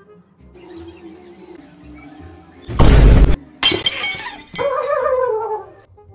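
Crash of a ceramic bowl smashing: a loud heavy impact about three seconds in, then a sharp shattering and clinking of breaking pieces. A brief pitched sound rising and falling follows.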